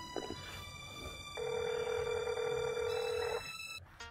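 A telephone ringing: one steady, buzzing ring about two seconds long that starts about a second and a half in and stops abruptly, over held background music.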